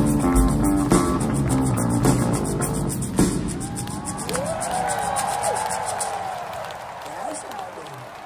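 Live rock band playing a driving bass-and-drum riff, stopping on a final hit about three seconds in. An arena crowd then cheers and whoops, fading away.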